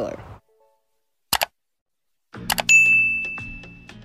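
Subscribe-reminder sound effect: a short click about a second in, then a bell-like ding past the halfway mark that rings on a single clear tone for about a second and fades, as background music starts up.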